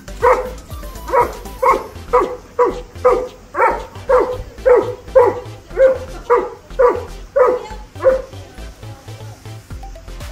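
Doberman barking repeatedly, about two barks a second, stopping about eight seconds in.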